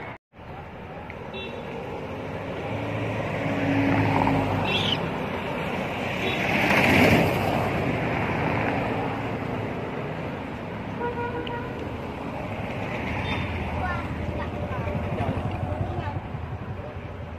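Road traffic: a vehicle passes by, its noise swelling to a peak about seven seconds in and then fading.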